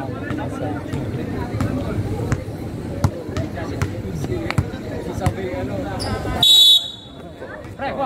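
Basketball bouncing on a concrete outdoor court, irregular thuds under faint background chatter, then a short, loud referee's whistle blast about six and a half seconds in.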